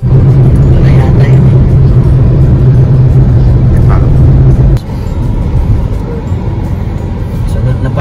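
Loud road and engine noise of a moving car, heard from inside the cabin: a steady low drone under a rushing noise. The level drops noticeably about five seconds in.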